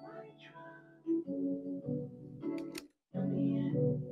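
Playback of a melodic beat in Logic Pro X, with pitched keyboard and vocal notes, while a channel EQ on the vocal track is adjusted: its low end is cut and a midrange band around 1 kHz is boosted. Playback drops out briefly just before three seconds in, then starts again.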